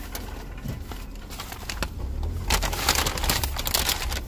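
Paper fast-food bag crinkling and rustling as it is handled and opened, loudest in the last second and a half, over a steady low rumble of the car.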